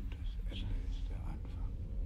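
Quiet whispered dialogue from a TV drama's soundtrack, over a low steady hum.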